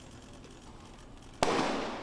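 A sudden sharp burst of noise about one and a half seconds in, fading away slowly, from the drop test of an Orion crew capsule falling into a water basin.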